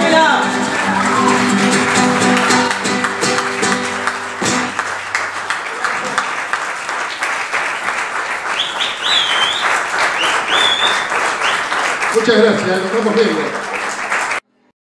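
Live audience applauding as the band's last chord on acoustic guitar and electric bass rings out and dies away a few seconds in. A few shrill whistles come through the clapping midway, and cheering voices near the end.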